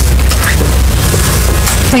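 Loud, steady low rumble with a hiss over it, carried on the microphone feed.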